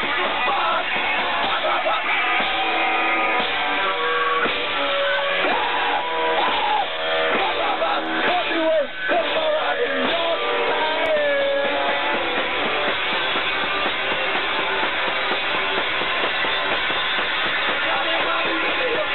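A rock band playing live, guitar through an amplifier with a singer.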